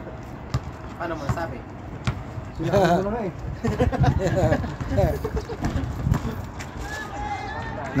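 Players shouting to each other across an outdoor basketball court, with short sharp knocks of a basketball bouncing on concrete.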